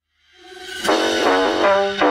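Pop song intro fading in from silence, then a brass section playing short stabs about every half second, the last one held.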